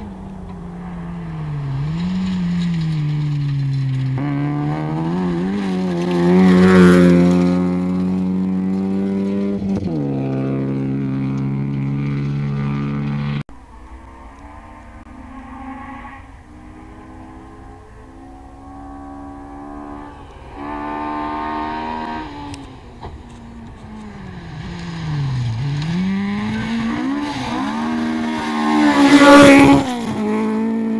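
Rally cars at full throttle on a gravel stage. A car's engine climbs through the gears as it approaches and passes close by about seven seconds in, then fades. After an abrupt cut, a second car is heard far off changing gear, growing louder until it passes close just before the end.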